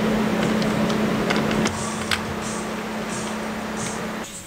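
Motorcycle workshop lift's motor running steadily with a low hum and a hiss, the lift being moved with the bike on it. A few light clicks of metal parts sound over it.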